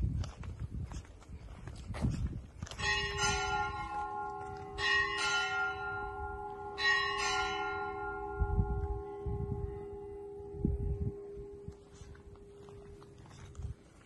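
A church tower bell struck three times, about two seconds apart. Each stroke rings on and fades slowly, leaving a low hum that carries on after the last.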